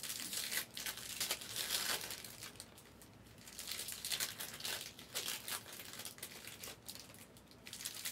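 Foil-wrapped trading card packs crinkling as they are handled, in irregular clusters of crackle with short lulls.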